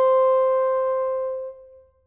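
Closing note of an orchestral score: a single held horn tone that fades out about a second and a half in.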